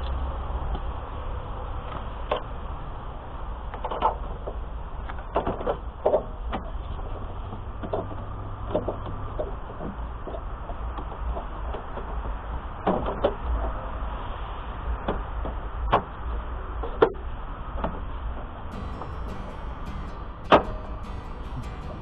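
Scattered light clicks and knocks of a plastic radiator trim cover being handled and pressed into place on a car's front end, over a steady low rumble.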